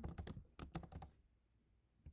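Typing on a computer keyboard: a quick run of keystrokes that stops about a second in.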